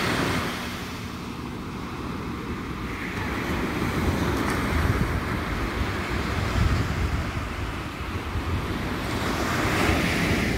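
Ocean surf breaking and washing up the shore, the level swelling and easing with each wave, with wind rumbling on the microphone.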